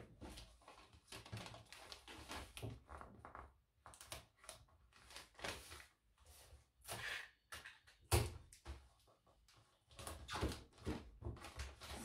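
Kraft wrapping paper rustling and crinkling in irregular bursts as it is folded and creased around a box, with small knocks of the box and hands on a wooden table and one louder thud about eight seconds in.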